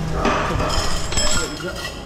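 Tableware clinking amid background voices: dishes and metal utensils knocking, with one bright ringing clink a little past halfway.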